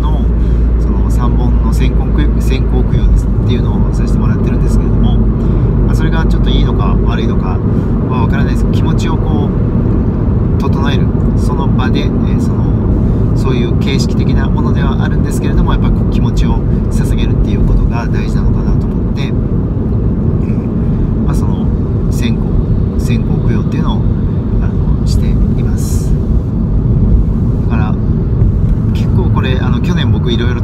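Steady road and engine rumble inside a moving car's cabin, heaviest in the first several seconds, with a man's voice talking over it.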